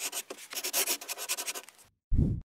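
Rough, rapid scratching like a brush or marker dragged over paper, a sound effect for red brush-lettered text being painted onto the screen; it fades out just before the end.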